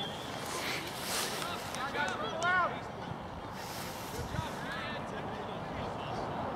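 Distant shouts and calls from players and spectators across the field, the loudest about two and a half seconds in, over outdoor background noise with brief rushes of wind on the microphone.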